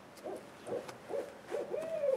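Owls hooting: a run of short hoots about every half second, then near the end a longer call that rises and then falls away.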